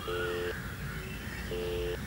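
Telephone ringback tone: a low purring ring in double pulses, two short rings then a pause of about a second, the line ringing while the caller waits for an answer.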